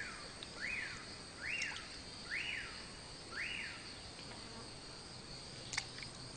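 A steady high insect drone, over which a bird calls a series of five rising-and-falling notes, about one a second, each pitched higher than the one before. A sharp click comes near the end.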